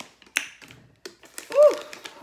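Light taps and clicks of small objects being handled on a tabletop, with a short pitched sound that rises and falls about a second and a half in, the loudest moment.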